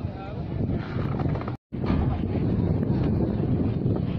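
Wind buffeting a phone microphone, a loud, uneven rumble, with faint voices behind it. The sound cuts out completely for a moment about one and a half seconds in.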